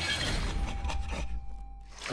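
Sound effects for an animated logo: a dense rushing, crackling wash over a deep rumble, with a few sharp hits. It thins out toward the end, and a faint held tone sounds through the middle.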